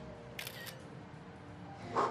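Smartphone camera shutter sound: one short, crisp click about half a second in.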